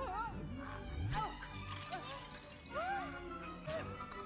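Film soundtrack playing: orchestral music with short swooping pitched cries over it and a sharp click or two.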